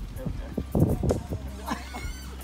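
A person's voice: a few short, breathy vocal sounds around the middle, without words.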